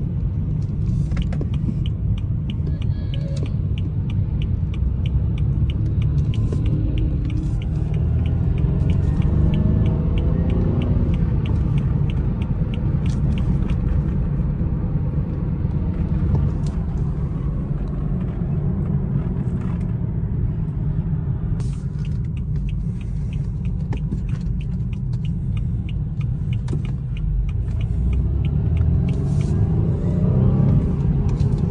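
Road and engine rumble inside a BMW 4 Series cabin on the move, with the engine pitch rising as the car accelerates about a third of the way in and again near the end. A light, fast, regular ticking runs through long stretches.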